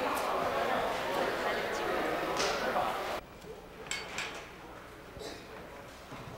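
Indistinct background chatter, loud and dense, that cuts off abruptly about three seconds in. It gives way to quieter room sound with a few light knocks.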